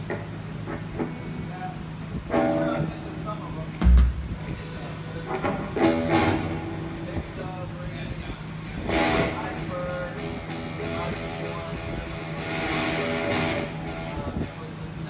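Sparse, scattered electric guitar and bass notes played through stage amplifiers over a steady amplifier hum, with one heavy low thump about four seconds in.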